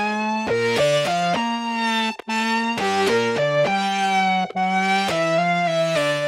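Instrumental intro of a reggaeton song: a single melodic instrument line of held notes stepping from one to the next, with no drums. It breaks off briefly about two and about four and a half seconds in.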